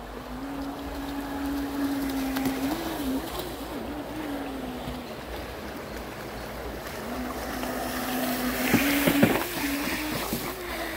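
Thrasher RC jetboat's motor and jet pump running through a shallow creek: a steady whine that wavers in pitch about three seconds in, fades out around five seconds, and returns about seven seconds in, over the rush of the stream. A couple of sharp knocks near the end.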